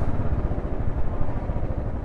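Royal Enfield Bullet's single-cylinder engine running as the motorcycle rolls along slowly: a steady, low, rapidly pulsing rumble.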